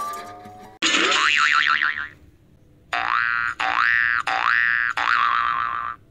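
Cartoon sound effects: after the tail of a rising jingle fades, a wobbling spring 'boing' starts suddenly about a second in, then four rising 'boing' glides follow one after another and stop abruptly near the end.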